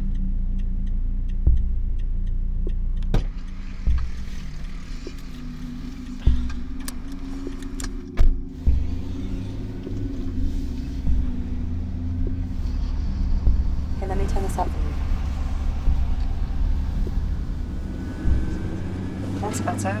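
Steady low engine and road rumble heard from inside a van's cabin as it drives, with several knocks and thuds in the first half.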